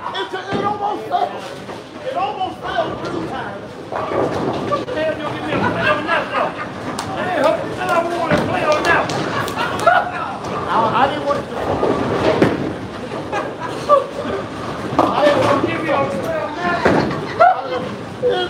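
Bowling alley din: balls rolling down the lanes and pins crashing with sharp clatters, under steady chatter of voices.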